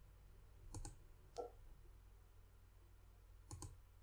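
A few faint computer mouse clicks in a quiet room: a quick pair about a second in, a single click shortly after, and another pair near the end.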